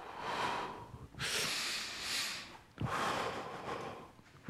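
A man taking deep, audible breaths, about three long breaths in a row, as a demonstration of full deep breathing.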